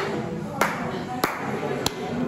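Gym room noise with three sharp clicks, evenly spaced about two-thirds of a second apart.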